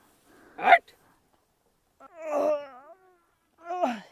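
Three short wavering, whimpering vocal cries; the middle one, about two seconds in, is the longest, with a wobbling pitch.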